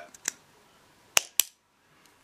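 The tightly sealed side trap door of a GoPro Hero 5 Session being pried and popped open. Two faint ticks come first, then two sharp snaps about a fifth of a second apart past the middle as the tight waterproof seal lets go.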